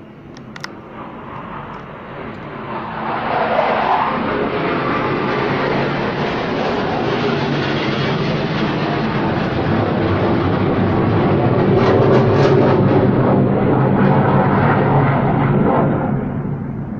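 Loud engine noise of aircraft passing overhead. It builds over the first few seconds, holds, and begins to fade near the end.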